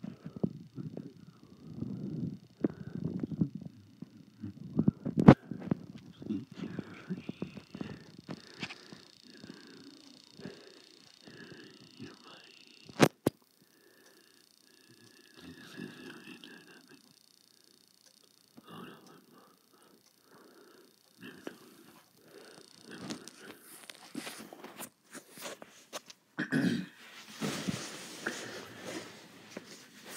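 Indistinct, low mumbled voice sounds that come and go, with two sharp clicks, one about five seconds in and one about thirteen seconds in. Near the end a throat is cleared twice.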